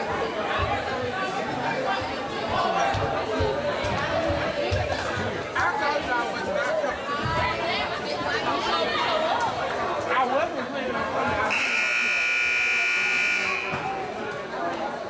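Gym scoreboard buzzer sounding one steady, harsh tone for about two seconds, near the end, over the chatter of voices in a large hall. It is the horn that ends a timeout as the teams break their huddle and return to the court.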